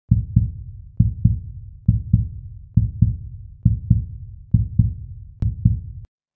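Slow heartbeat, seven double thumps (lub-dub) a little under a second apart, each fading away, with a single faint click near the end.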